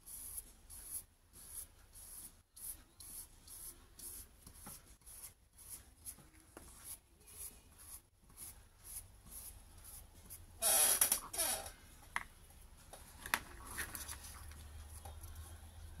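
Flat bristle brush stroking decoupage glue over a paper napkin on a card, in short soft brushing strokes about two a second, with one louder rustling scrape about eleven seconds in.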